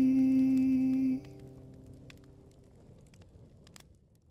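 A single held, hummed note as the song's closing sound, steady with a slight waver, cutting off suddenly a little over a second in. A faint fading tail with a few soft clicks follows.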